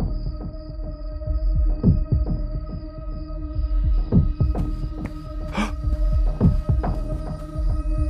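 Dark ambient horror score: a low droning hum with steady high tones held over it and a deep thud about every two seconds, like a slow heartbeat. A brief rushing sound about five and a half seconds in.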